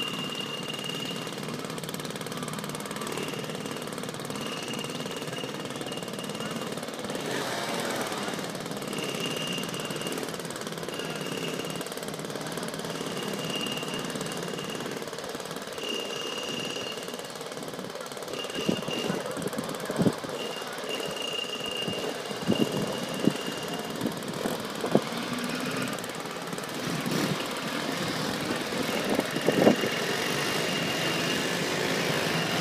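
A group of mopeds and scooters running together, their engines idling and revving, then pulling away and riding past. In the second half there are a number of short, loud, sharp sounds.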